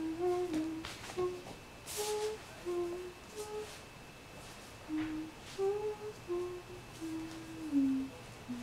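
A person humming a tune with closed lips: a string of held notes that step up and down, in two phrases with a pause of about a second near the middle. A short click about two seconds in.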